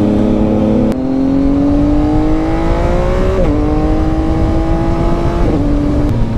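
Motorcycle engine pulling steadily up through the revs, its pitch dropping with an upshift about three and a half seconds in and again about five and a half seconds in, over wind noise.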